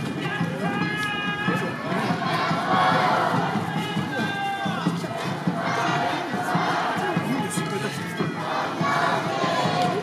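Awa Odori dancers shouting their chant calls together in several bursts, over the troupe's festival band with its large drum and pitched melody.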